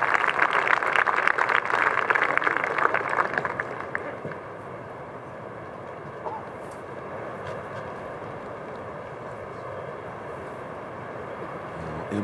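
Golf gallery applauding a good approach shot, the clapping dying away about four seconds in and leaving a low, steady outdoor crowd ambience.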